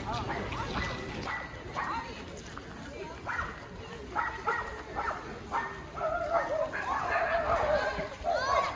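Voices of people talking in the background, with a small dog yipping and whining in short calls that grow louder and busier near the end.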